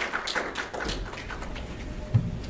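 Light, scattered hand-clapping from a small audience that dies out about a second in, leaving a low room hum.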